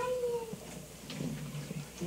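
A young child's short, high-pitched vocal sound, about half a second long, at the start, followed by faint low murmuring.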